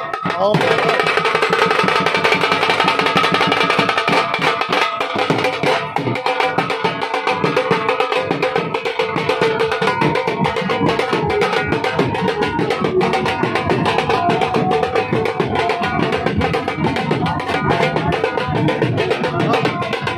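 Live folk drumming for dancing: a rope-and-chain-tensioned wooden dhol beaten with a stick and a smaller stick-beaten side drum play a fast, driving rhythm. A sustained melody runs over the drums.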